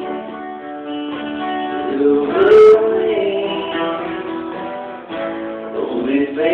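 Two acoustic guitars strumming and picking a slow country ballad. About halfway through a woman's voice swells on a sung note, briefly distorting at its loudest.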